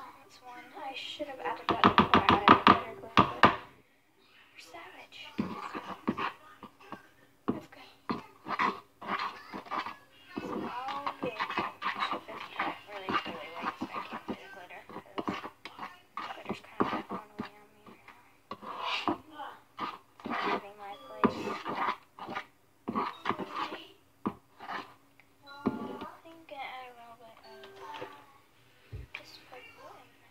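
A girl's voice, talking and singing indistinctly, loudest in a held, sung stretch about two seconds in. A faint steady hum runs underneath.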